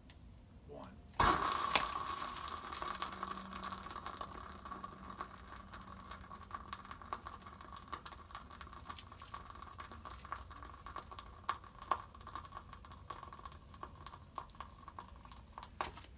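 Isopropanol squirted onto manganese heptoxide ignites with a sudden loud pop about a second in, then the jar burns with a steady hiss and many small crackles.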